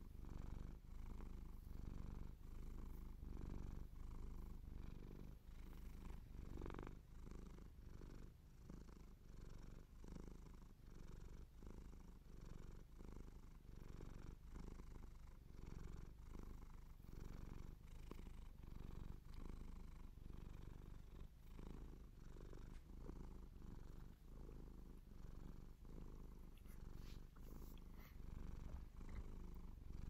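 A domestic cat purring faintly in an even, pulsing rumble while fingers scratch and stroke its fur.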